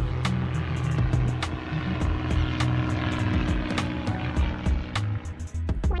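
Propeller-plane sound effect, a steady drone, over background music with a clicking beat.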